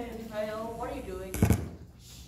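Voices talking, then one sharp, loud thump about one and a half seconds in, the loudest sound here.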